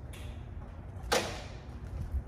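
A single short swish about a second in as the propeller of a light aircraft's piston engine is pulled through by hand with the engine off, to get the oil pump moving before a cold start. The engine is still stiff with cold oil.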